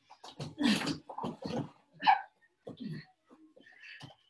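Two wrestlers scrambling through a takedown on a padded mat: a run of sudden scuffs, thuds and short grunting breaths, loudest about a second in and again at two seconds.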